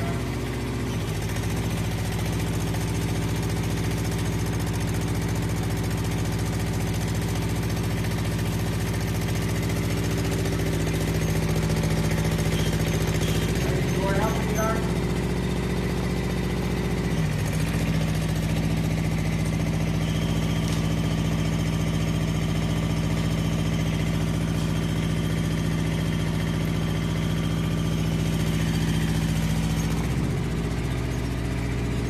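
SPT299 spider crane's engine running steadily while lifting a glass panel on its vacuum lifter. Its note shifts and settles again around the middle.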